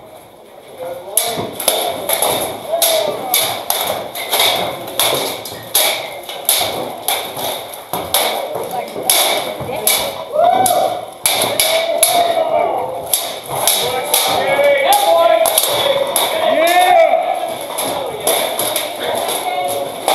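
Steel swords striking plate armour and clashing blade on blade in rapid, repeated blows, starting about a second in, with spectators shouting over the fight.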